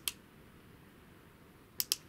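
Quiet room tone, with a click at the start and two sharp clicks close together near the end, from the button on a light-up plastic tumbler's lid being pressed to switch its lights off.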